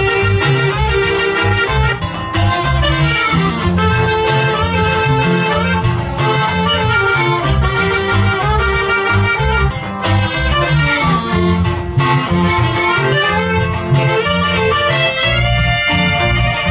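A live norteño band playing an instrumental passage: accordion and saxophone carry the melody over a rhythmic electric bass line.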